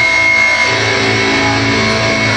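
A metalcore band playing live at full volume: distorted electric guitars over bass and drums, loud and steady without a break.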